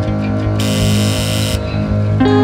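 Background music, with a bright, steady electronic sound effect that lasts about a second, starting about half a second in. It marks the quiz countdown running out, just before the answer is revealed.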